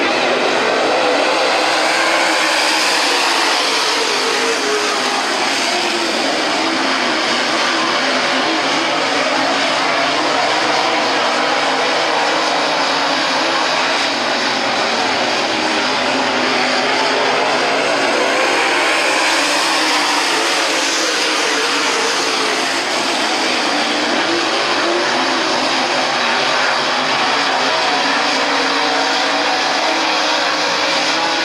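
A field of dirt late model race cars at racing speed, their V8 engines running loud and continuous, the engine notes rising and falling as cars pass by and go through the turns.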